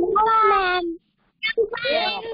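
A young child's high-pitched voice in a drawn-out, sing-song call that falls in pitch over about a second, then a second call starting about a second and a half in.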